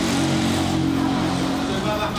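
A motor engine running steadily with an even hum.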